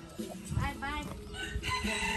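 A rooster crowing, one held call that starts about one and a half seconds in.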